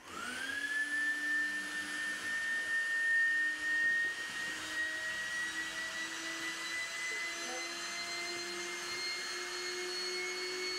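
Small electric air pump switching on and spinning up with a quickly rising whine, then running steadily while blowing air into an inflatable pool, its pitch creeping slowly upward.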